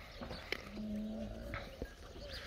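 A short, low animal call, faint and held steady for about half a second near the middle, with a couple of soft clicks around it.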